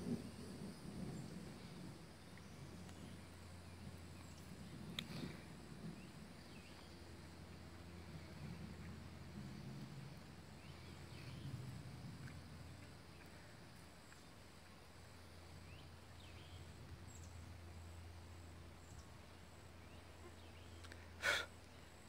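Faint outdoor ambience with a low, wavering rumble under a stormy sky. There is a small click about five seconds in, and a short, sharper burst shortly before the end.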